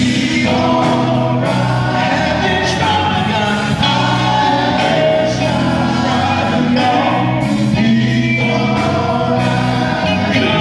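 Male gospel vocal group singing in harmony: a lead voice over sustained backing voices, held and sliding through the notes without a break.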